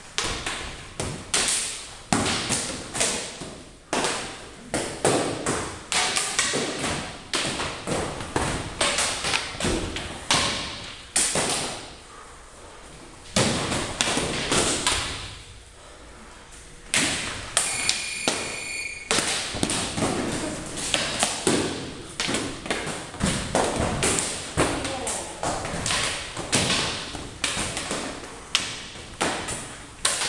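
Sword sparring on foam mats: irregular thuds and taps from footwork and blade strikes, with two quieter pauses about midway.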